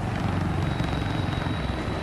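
A big helicopter flying close overhead, its rotor giving a steady deep chop with a thin high whine above it.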